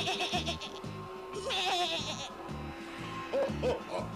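Goats bleating twice, a short bleat at the start and a longer quavering one about a second and a half in, over background music with a steady bass beat.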